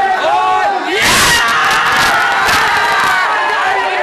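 A crowd of men shouting. About a second in, the shouting swells into a loud roar of many voices at once.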